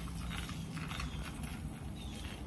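Faint outdoor background noise: a steady low rumble with light irregular ticking over it.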